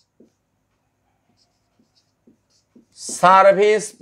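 Marker writing on a whiteboard: a few faint, short taps and strokes over a mostly quiet stretch. A man's voice starts speaking in the last second.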